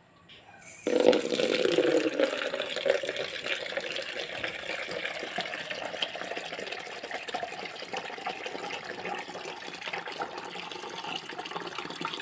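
Water running out in a steady splashing hiss for watering potted plants, starting suddenly about a second in and loudest just after it starts.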